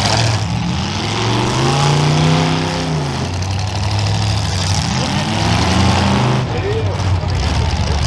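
Demolition derby cars' engines running in the arena, one engine revving up and back down about two seconds in over the steady drone of the others.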